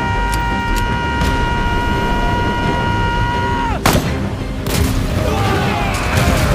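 Dramatized battle sound effects: three gunshots in the first second and a half over a low rumble, beneath a sustained high note that slides down and breaks off almost four seconds in as a loud explosion hits. More blasts follow near the end.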